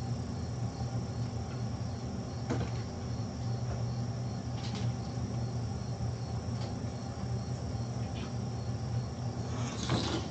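Steady low electrical hum of room tone, with a faint, evenly repeating high-pitched chirping pulse about three times a second and a few soft clicks, plus a brief scuff near the end.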